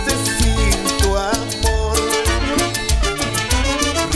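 Salsa orchestra playing, with trumpets and a steady percussion rhythm over a pulsing bass line.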